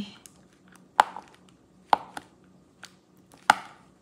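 Diamond-painting drill pen tapping as it picks up resin drills and presses them onto the sticky canvas: three sharp taps with fainter clicks between.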